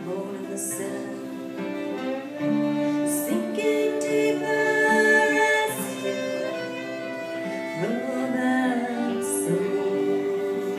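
Live band playing a song: a woman singing over strummed acoustic guitar, electric guitar and violin.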